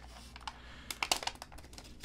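Paper protective wrap being peeled off an iPad mini: a scatter of small, quiet clicks and crackles from the paper and the fingers on the tablet.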